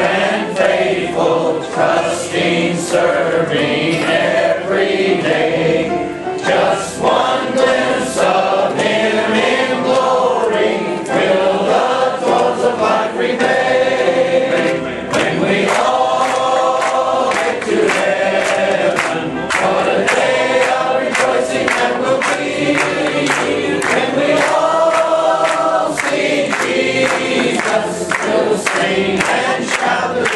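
A church congregation singing a gospel hymn together, led by a man singing into the pulpit microphone.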